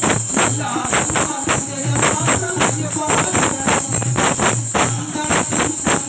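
A tambourine with metal jingles played in a steady beat for a devotional bhajan, its jingles ringing continuously, under a man's singing voice through a microphone.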